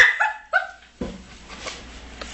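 Two short, high yelps from a person, each falling in pitch, in the first half second; quieter low noise follows.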